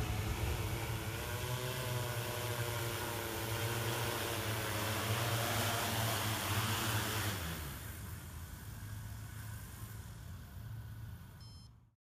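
Large heavy-lift multirotor drone's propellers and motors droning, the pitch wavering as throttle changes while it hovers low and descends. About seven seconds in the hum drops sharply, the motors spinning down, and the sound fades away.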